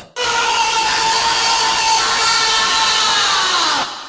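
A sustained wall of electronic noise with a few steady tones running through it, ending a speedcore track. It starts abruptly, holds with no beat, and its tones sag in pitch near the end as it fades out.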